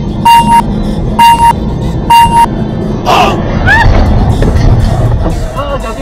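Three sharp electronic warning beeps, about a second apart, over the steady low rumble of road and engine noise inside a moving car. A short burst of noise follows, then brief rising and falling cries.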